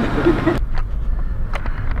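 Low, steady rumble of a car on the move, heard from inside the cabin, starting abruptly about half a second in after a voice stops. A couple of faint clicks sound over it.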